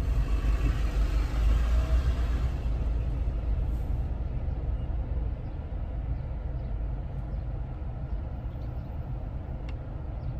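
Car cabin noise while driving slowly: a steady low engine and road rumble, with a brighter hiss in the first few seconds that then fades. A single sharp click near the end.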